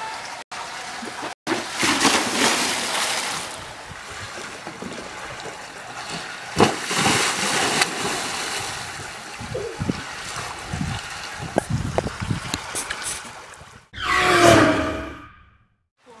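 Water splashing in a backyard above-ground pool as kids jump in, with two surges of splashing and sloshing water between them. A short voice-like call near the end.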